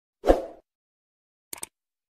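Subscribe-button animation sound effects: a single short, sudden effect about a quarter second in, then a quick double mouse click near the end as the button is pressed.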